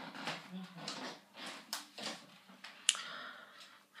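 Faint, broken-up sounds of a person in a small room: a quiet voice now and then, small rustles and clicks, and one sharp click about three seconds in.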